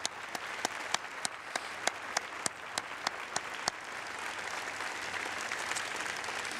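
Audience applauding. A single pair of hands close by claps sharply over the crowd, about three times a second, and stops about four seconds in, while the general applause carries on.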